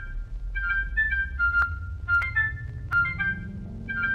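Retro TV-show intro jingle: a tinkling, music-box-like melody of quick high notes, punctuated by several sharp percussive hits, over a low tone that rises steadily in pitch.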